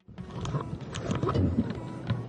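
Irregular, rough wind and water noise on the open deck of a rescue boat under way, with a low rumble underneath.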